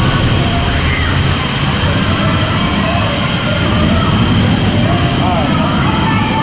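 Steady rush of water pouring from a waterfall into a water-park lazy river, with faint voices of other riders in the background.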